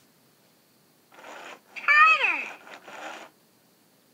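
Big Hugs Elmo talking plush toy's voice from its built-in speaker: a short breathy sound, then one high vocal sound that glides down in pitch about two seconds in, trailing off.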